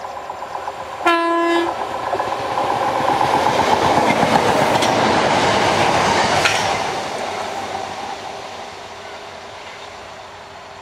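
Southeastern Class 466 Networker electric train sounds one short horn note about a second in. It then passes close by, loudest from about three to seven seconds in with the clatter of wheels on the track, and fades as it runs on.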